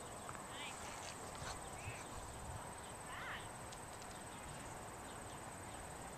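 Quiet outdoor ambience: a steady faint background hiss with a thin high continuous tone, broken by a few faint short chirps.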